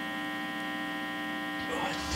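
Steady electrical hum and buzz from a Boss Katana Mini guitar amplifier switched on with a guitar plugged in, holding one even pitch with many overtones. A faint brief noise comes near the end.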